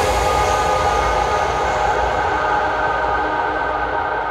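Closing drone of a psytrance track once the beat has stopped: a sustained rumbling wash of noise with steady high tones held over it, slowly fading.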